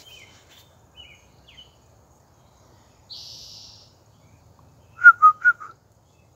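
Four short, loud whistled notes in quick succession about five seconds in, with faint small-bird chirps earlier and a brief hiss about three seconds in.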